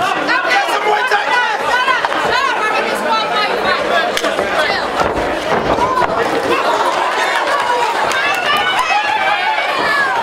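Boxing crowd shouting and chattering, many voices overlapping steadily without a break.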